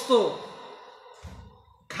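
A man's voice ends a word and echoes away. About a second later comes a short breath into the microphone, with a soft low thump, in the pause before he speaks again.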